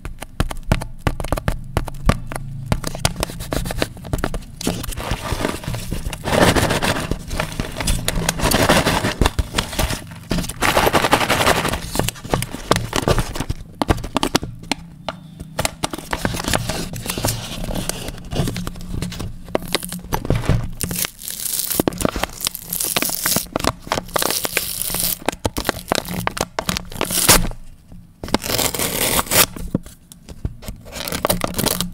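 Plastic shrink-wrap on a cereal cup crackling and crinkling as fingers scratch, pick and peel at it close to the microphone, with the film being torn away.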